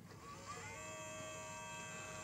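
Small electric motor of an EP Integrations brass annealer's rotating case wheel whining faintly as its speed is turned up: the pitch rises in the first half-second or so, then holds steady at the faster speed.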